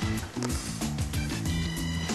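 Background instrumental music with a bass line moving through short notes.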